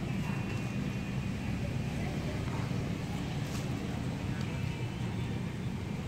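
Steady low background hum and rumble, unchanging throughout.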